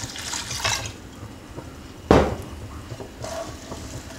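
White wine being poured into a pan of rice for risotto. There is a single sharp knock about two seconds in.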